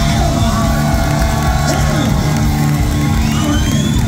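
Live punk rock band with amplified guitars holding loud sustained chords while the crowd cheers and whoops. A rising high tone comes in near the end.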